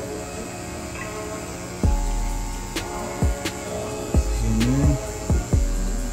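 Electric hair clipper buzzing steadily as it cuts close to the scalp, over background music with deep bass swells entering about two seconds in and again near the end.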